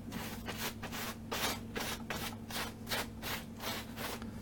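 A brush rubbing back and forth over a painted canvas in quick, even strokes, about three a second.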